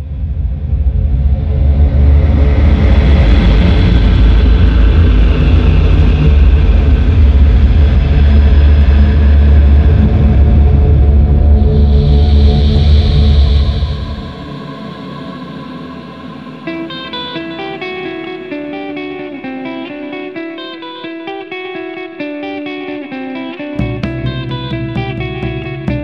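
Gothic rock song intro. A loud, low rumbling drone with a dark wash of noise fills the first fourteen seconds, then falls away. A guitar with echo then picks a slow repeating pattern of single notes, and heavy low end comes back in right at the end.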